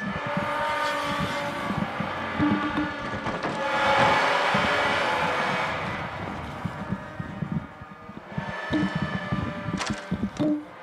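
Droning horror soundtrack with sustained tones and a rushing noise that swells to a peak about four seconds in and then fades, over irregular low thumps and rustling. A short laugh comes near the end.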